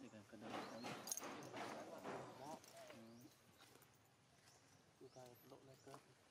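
Faint voices of people talking in the background in short unclear stretches, with a single sharp click about a second in.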